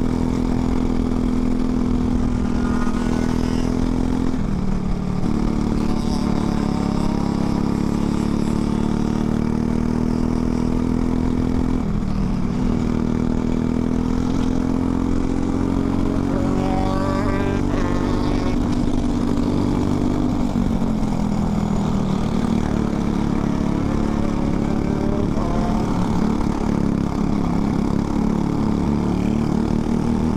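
Onboard sound of a Briggs & Stratton LO206 single-cylinder four-stroke kart engine running at speed on track. The engine note dips and climbs again about four, twelve and twenty seconds in, as the kart lifts off and gets back on the throttle.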